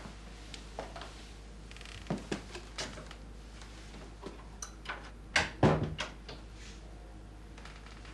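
Wooden door being opened and closed: scattered light clicks and knocks from the handle and latch, with the loudest pair of knocks about five and a half seconds in.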